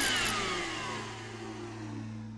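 A whooshing, rushing sound effect whose pitch falls steadily as it dies away, like something winding down or passing by, over a steady low hum.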